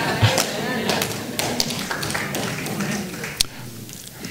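Laughter and murmuring voices for about three seconds, then fading, mixed with light taps and knocks of footsteps and hands on an acrylic pulpit; a few sharp taps stand out in the quieter last second.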